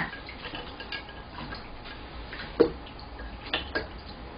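Light water sounds of soba noodles being swished and lifted in a ceramic bowl of ice water, with scattered small clicks and drips; the sharpest click comes a little past halfway.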